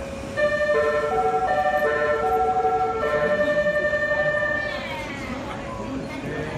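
485 series electric train's musical horn playing a short melody of held notes for about four seconds, its pitch sliding down as it dies away. A steady hum runs underneath.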